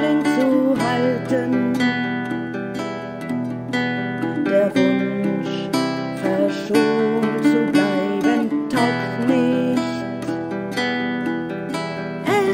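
Acoustic guitar playing an instrumental passage of a folk-style song accompaniment.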